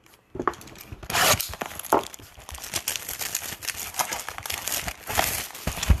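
Trading card packaging crinkling and tearing as a Bowman Draft box and its foil packs are unwrapped and handled: a dense run of crackles with louder rips about a second in, near two seconds and near five seconds.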